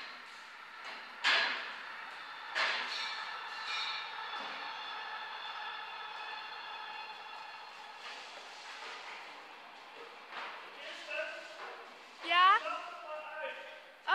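Dairy barn sounds: two sharp knocks early on, then a long steady drawn-out tone lasting several seconds, and near the end a short burst of quickly rising calls or squeals, among cows at steel stall and feed-barrier bars.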